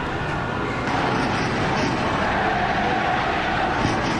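Steady rushing background noise with no distinct event.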